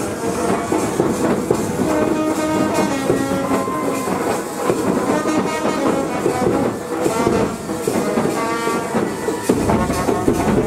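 A brass band playing a tune in long held notes, over the din of a crowd.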